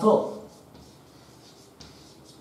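Chalk writing on a blackboard: faint scratches and taps of the chalk on the board, with one sharper tap near the end.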